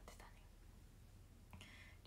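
Near silence: faint room tone with a low hum. A short soft intake of breath comes near the end, just before she speaks again.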